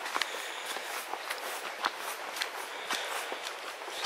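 Footsteps of walking boots crunching on a gravel path strewn with wet fallen leaves, about two steps a second, over a steady background hiss.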